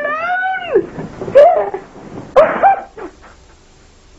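A high-pitched wailing cry that rises and falls for about a second, then three short whimpering yelps.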